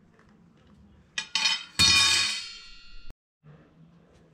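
A couple of light metallic clinks, then a loud metal clang that rings on with a bright, bell-like tone for over a second before cutting off suddenly: a steel part or tool being knocked while angle-iron braces are fitted.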